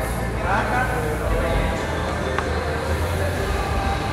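Rowing machine's air flywheel whirring as an athlete rows, a steady low whir, with voices in the gym over it.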